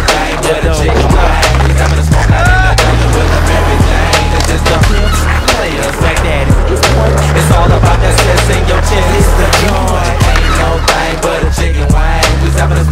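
Skateboard wheels rolling on concrete, with many sharp clacks of boards popping and landing, over hip-hop music with a heavy, steady bass line.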